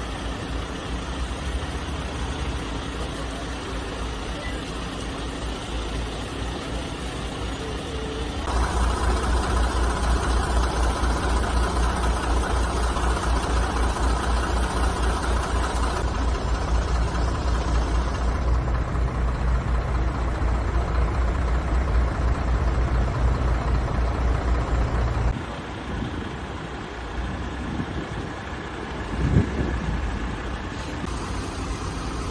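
Vehicle engines idling with a steady low hum, which gets louder about a third of the way in and drops back near the end, with a short knock just before the end.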